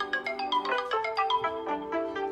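Timer alarms ringing together on two smartphones, an OPPO A96 and a Samsung Galaxy S8+, after their countdowns have run out: overlapping marimba-like melodies of quick, bright notes.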